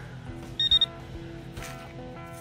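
Metal-detecting pinpointer probe beeping a quick pair of high chirps as it is pushed through a loose dirt pile: it has found a metal target in the soil.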